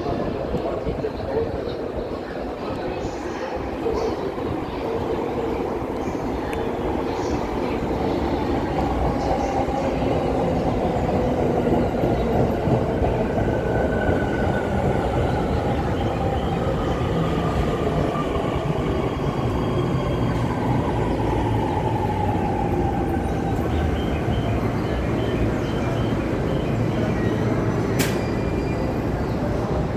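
JR East E231-series electric commuter train pulling in along the platform, its wheels and running gear rumbling louder over the first ten seconds or so. Its traction motors give a whine that falls in pitch as it brakes.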